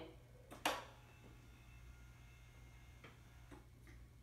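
Voice-controlled hospital bed lowering its back section, with a low steady motor hum. A single sharp click comes about half a second in, then a couple of faint ticks near the end.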